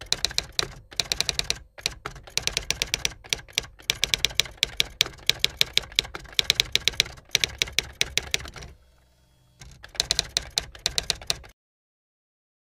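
Typewriter sound effect: rapid runs of key clicks with short breaks, pausing briefly near the end, then a last run that stops abruptly.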